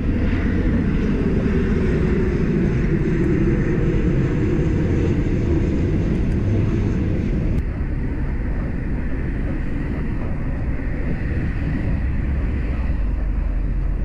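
Steady wind and road rumble on a bicycle-mounted camera while riding along a paved path; the upper hiss thins out a little past halfway.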